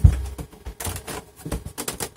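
Plastic rear cover of a Lenovo IdeaCentre 300-23ISU all-in-one being pushed up and clipped into place: a heavy thump at the start, then a run of light clicks and knocks as the cover's clips seat.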